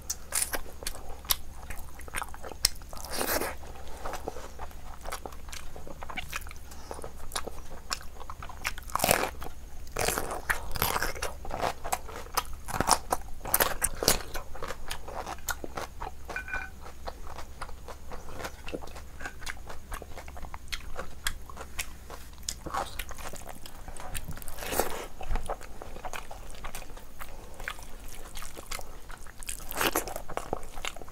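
Close-miked chewing of rice and mutton curry eaten by hand: wet mouth sounds and sharp clicks in an irregular run.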